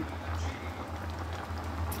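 Pot of turkey bone broth simmering on the stove: a soft, even bubbling hiss over a steady low hum.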